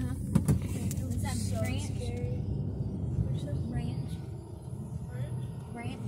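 Steady low rumble of road and engine noise inside a moving car's cabin, with a couple of brief clicks near the start.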